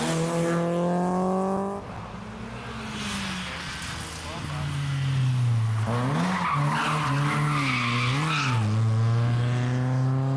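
BMW E30 rally car engine at racing revs: it accelerates with a rising note, then cuts off suddenly. Later it comes back loud, its pitch dipping and rising several times as the driver lifts and shifts, with a rough hiss of tyre noise, before settling into a steady climb in revs.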